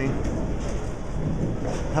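Bowling-alley room noise: a steady low rumble with faint distant voices.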